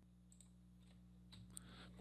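Near silence: a faint steady electrical hum, with a few faint clicks in the second half.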